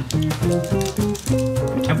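Background music: a tune of short, quickly changing notes over a bass line, at a steady level.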